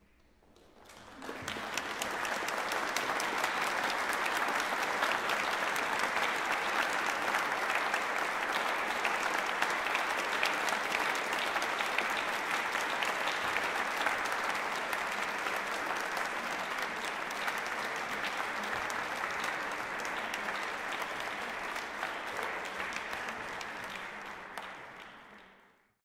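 Audience applauding steadily, fading in about a second in and fading out shortly before the end.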